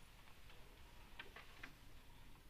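Near silence in the hall, broken by a few faint, sharp clicks about a second in and again near the end.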